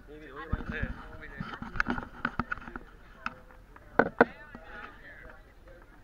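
Several people's voices talking and laughing indistinctly, mixed with scattered knocks and clatter. About four seconds in come two sharp, louder knocks in quick succession.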